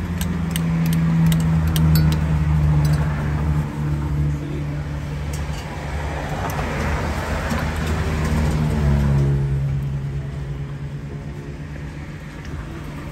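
Motor vehicle engine running close by: a loud, low, steady hum that shifts pitch twice. Traffic noise swells and fades in the middle.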